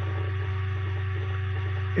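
Steady low electrical hum, like mains hum on the audio line, with no other sound.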